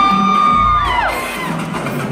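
Dance music played loud over a club sound system, with a long held high note that holds steady and falls away about a second in, and a crowd cheering over it.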